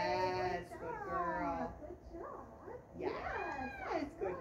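Redbone Coonhound howling in long calls that bend up and down in pitch: two in the first two seconds and another about three seconds in.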